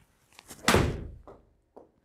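A golf iron strikes a ball off a hitting mat and the ball thuds into an indoor simulator screen: one loud impact about two thirds of a second in, dying away over about half a second. It is a cleanly contacted shot. A faint tap comes near the end.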